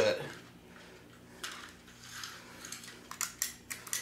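Small hard plastic clicks and taps from a toy HO-scale slot car being handled and set onto plastic slot car track, a few scattered at first and a quick cluster of them near the end.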